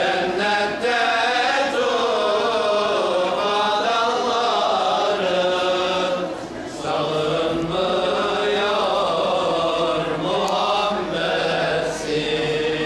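Religious chanting in long, drawn-out melodic phrases, with a short break about six and a half seconds in.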